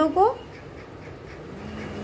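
A woman's voice says one short word, then only a steady low background hiss.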